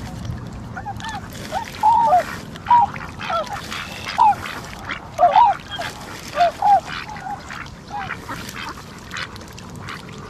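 Swans calling: a dozen or so short honking calls at irregular intervals, one bird or a few answering each other, over faint outdoor background noise.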